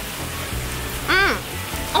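Steady hiss of rain falling, under soft background music, with a brief rising-and-falling vocal sound about a second in.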